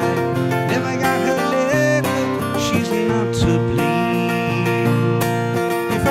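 Acoustic guitars playing an instrumental passage of a country-style song: steady strummed chords with a melody line moving over them.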